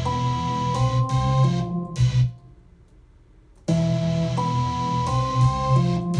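A beat in progress playing back in the studio: a melody of held notes over heavy bass. It stops about two seconds in and starts again about a second and a half later, as the loop is restarted.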